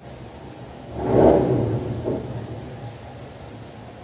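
Motorcycle engine swelling to a peak about a second in and fading over the next second or so, over a steady low hum.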